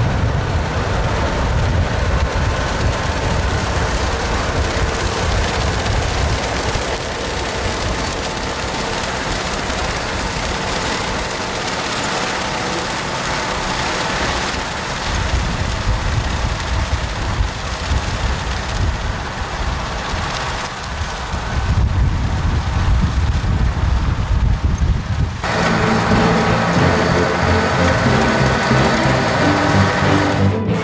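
Valtra tractor running as it pulls a Claas Volto rotary tedder through cut grass, heard under a heavy rumble of wind on the microphone. Music cuts in suddenly near the end.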